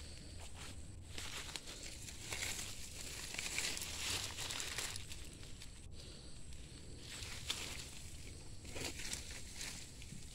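Faint rustling of wet leaves and plants and soft footsteps on leaf litter, over a steady outdoor hiss.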